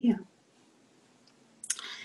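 A short spoken "yeah", then faint background noise of a video call and a brief hissy, breathy noise near the end.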